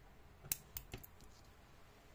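Metal scissors snipping off yarn tails on a crocheted plush-yarn toy: three short, sharp clicks close together, starting about half a second in.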